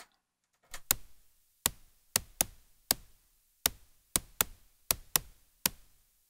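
White noise from an SSF Quantum Rainbow 2 noise module, struck through the short-decay channel of a Make Noise LxD low pass gate, giving short, sharp, snare-type hits. About eleven bright hits come in an uneven, syncopated rhythm from a trigger pattern.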